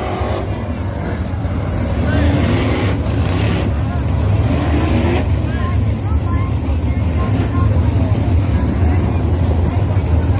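A pack of winged 305 sprint cars racing by on a dirt oval, many V8 engines running at once in a loud, steady, low rumble.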